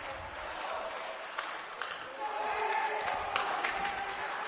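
On-ice sound of an ice hockey game in play: skates scraping, with scattered sharp clicks of sticks and puck. In the second half there is a drawn-out voice call.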